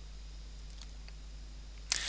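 Steady low electrical hum and faint hiss of the recording's background, with a few faint computer-mouse clicks. A voice starts just before the end.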